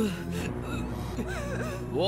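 Film background score holding a steady low drone, with a person's gasping, sobbing breaths over it.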